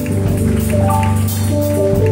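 Live church worship music: instruments holding sustained chords over a steady bass, with hand clapping.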